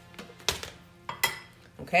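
Two sharp knocks of a wooden spoon against the metal inner pot of an Aroma rice cooker, about half a second and a quarter apart, the second followed by a short ring.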